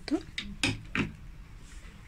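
A few short plastic clicks and knocks, bunched in the first second, as the switch unit of a string of LED lights is handled and its button pressed to switch the lights on.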